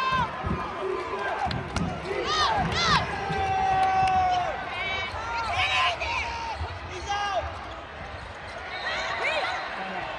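Basketball game on a hardwood court: a ball bouncing and sneakers squeaking as players run, with spectators' voices and shouts throughout.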